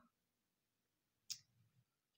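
Near silence with one short, sharp click about two-thirds of the way through.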